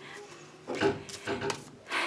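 Soft rubbing and handling noises with a couple of brief louder scrapes about a second in.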